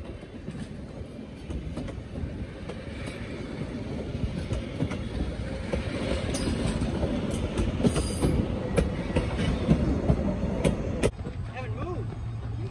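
Streamlined stainless-steel passenger cars of the Nebraska Zephyr rolling past on the rails, a steady rumble with wheels clicking over the rail joints. It grows louder as the last car passes close and drops away near the end as the train clears.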